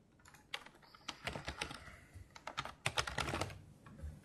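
Typing on a laptop keyboard: two quick runs of keystrokes, one in the first half and one, slightly louder, in the second.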